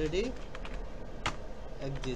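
Computer keyboard typing: a run of irregular key clicks, with one sharper click about 1.3 seconds in.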